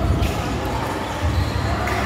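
Sounds of a basketball game on a hardwood gym court: irregular low thuds of the ball and players' feet, with voices in the hall.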